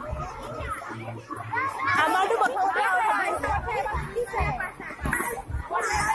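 Many children's voices shouting and chattering at once, busiest and loudest from about one and a half to three and a half seconds in.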